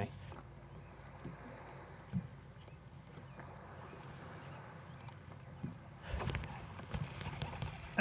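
Faint outdoor ambience of lake water around a boat, with wind on the microphone; a louder rush of low rumbling noise comes about six seconds in and lasts about a second.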